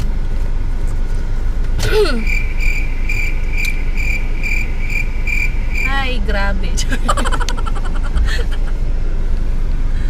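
A car engine idles, heard as a steady low rumble inside the cabin. About two seconds in, a high electronic beep starts repeating about three times a second for nearly four seconds, then stops. Short bits of voice come and go over it.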